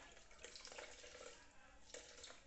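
Faint tap water running onto a sponge as it is wetted, a soft steady splashing that starts about half a second in.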